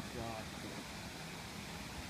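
Low, steady background hiss of quiet outdoor ambience, with a faint brief voice in the first half second.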